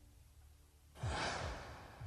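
A single sigh, a breath-like rush of air, about a second in, fading out over most of a second.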